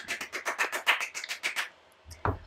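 One person clapping quickly and excitedly, about eight claps a second, stopping shortly before the end.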